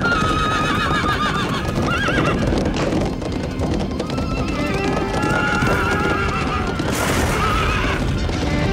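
Cartoon horses neighing and whinnying several times with a quavering pitch, over galloping hoofbeats and dramatic background music.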